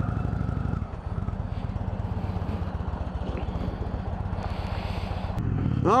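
Indian Thunder Stroke 111 V-twin running at low revs with a steady, even beat. Near the end it gives way to louder engine and road noise as the motorcycle rides at speed.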